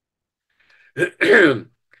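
A man clearing his throat once, about a second in, after a moment of silence.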